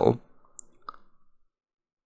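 The tail of a man's spoken word, then two small clicks about a third of a second apart, then silence.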